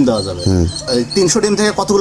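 Men talking, with short high bird chirps in the background.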